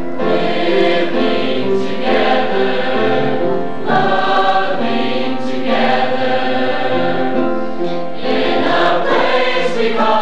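Mixed choir of teenage boys and girls singing together, coming in at the start after a piano introduction, in phrases with short breaths about four and eight seconds in.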